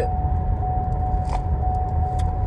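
Steady low rumble inside a car cabin, with a thin, steady high whine over it and a single soft click a little past halfway.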